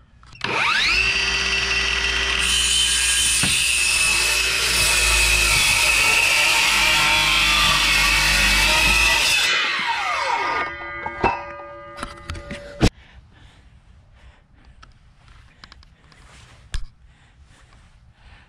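Electric circular saw spinning up and cutting through a wooden door board for about nine seconds, then winding down with a falling whine. A few knocks and a sharp click follow. The cut separates the two doors, and the blade runs through without pinching.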